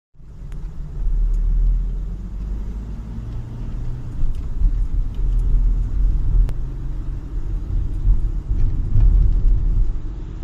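A car driving along a city street, heard from inside the cabin: a steady low rumble of engine and tyres that swells and eases a little.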